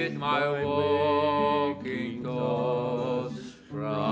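A man singing a slow worship song in long, held notes, accompanied by acoustic guitar, with a brief break between phrases near the end.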